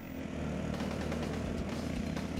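Off-road dune buggy engine running as the buggies drive along, heard from on board: a steady low drone that comes in just after the start.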